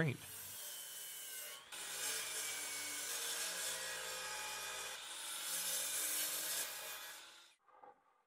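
DeWalt miter saw running and crosscutting thick red oak boards, a steady machine sound with a short break about two seconds in; it stops shortly before the end.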